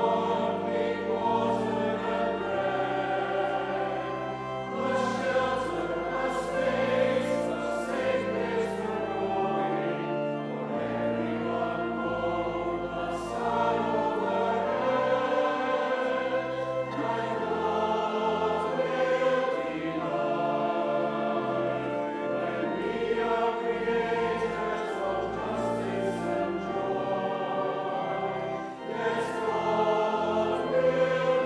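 Church choir singing in parts with organ accompaniment, the organ holding sustained bass notes under the voices.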